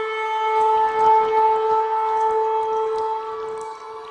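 A shofar (ram's horn) sounding one long, steady blast that fades toward the end.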